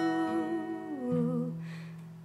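A woman's singing voice holds the last note of a line and lets it step down and fade about a second in, over a ringing acoustic guitar chord, with a short intake of breath near the end.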